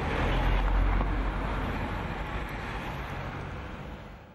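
A pickup truck driving slowly past close by: low engine rumble with tyre and street traffic noise, loudest about a second in, then gradually fading.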